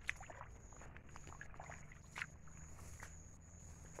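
Faint footsteps squelching and splashing through deep, wet mud and puddles, with a sharper splash just after the start and another a little after two seconds.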